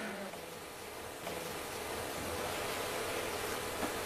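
Faint, steady hiss of background noise with a low hum, getting slightly louder about a second in.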